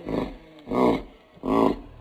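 Lion grunting three times, each grunt short and deep and about two-thirds of a second after the last: the series of grunts that closes a lion's roar.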